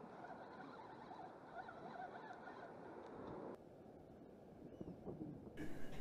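Faint wash of the sea against a rocky shore, a steady low noise, dropping quieter and duller about three and a half seconds in.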